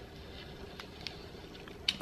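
Faint scratching and light ticks of a utility knife blade cutting through a dried acrylic paint skin on a cutting board, with a sharper click near the end.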